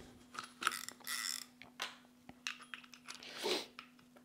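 A spare spool being fitted onto a spinning reel by hand: scattered small clicks, with a brief ratcheting rattle about a second in and another near the end.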